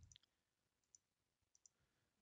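Near silence with a few faint clicks from computer input: one just after the start, one about a second in and two close together near the end.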